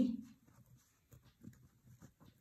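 Pen writing on paper: a few faint, short strokes as a word is written out.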